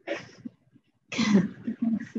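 A person coughing and clearing their throat in a few short, harsh bursts, the loudest a little over a second in.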